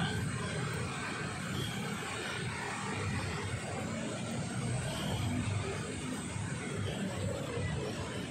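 Steady outdoor city-street ambience: an even, low rumble with no single sound standing out.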